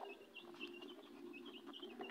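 Faint, rapid short chirps of birds repeating in the background, over a faint steady low hum.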